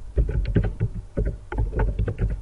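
Computer keyboard being typed on: a quick, irregular run of key clicks, about six a second, each with a dull thump.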